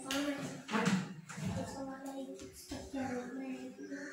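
Young children's voices chattering and calling out while they play.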